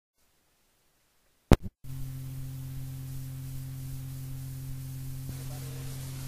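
Dead silence, then two sharp clicks about a second and a half in, after which the steady low hum and hiss of an old 1980 lecture recording runs on.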